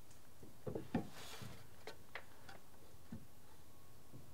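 A few faint, scattered knocks and clicks of a small piece of timber being handled and fitted into a wooden roof frame, the loudest about a second in.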